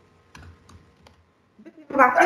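Computer keyboard keys tapped a few times in short, irregular strokes while an email address is typed.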